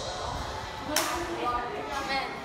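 Women's voices talking briefly, with one sharp click about a second in.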